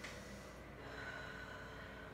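A person breathing faintly through the nose while holding a standing-splits yoga pose, with a thin whistle-like tone on the breath in the second half, over a low steady hum.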